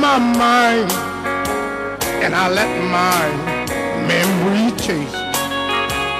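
Live country band music: electric guitar and a Yamaha arranger keyboard play an instrumental passage over a steady beat. The lead melody bends and slides in pitch.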